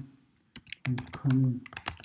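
Computer keyboard being typed on: a quick run of sharp keystrokes starting about half a second in, as a URL is typed out.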